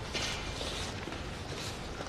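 Footsteps of a person walking across a hard floor, a few soft steps.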